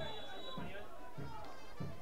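Faint background of distant voices with quiet music, no sharp sounds.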